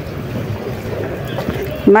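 Steady wind noise buffeting the microphone, an even rumbling hiss with no distinct events.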